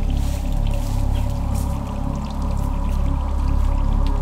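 Psytrance music, the opening of the track: a sustained deep bass drone under held synth tones, with brief high swishes and flutters over the top.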